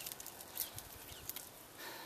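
Faint rustling and a few light, irregular clicks as a clump of vetiver grass is pulled apart by hand, its tillers and soil-caked roots tearing and separating into individual slips for planting.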